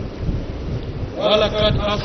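A low rumbling background noise with no clear source, then a man's voice starts just over a second in.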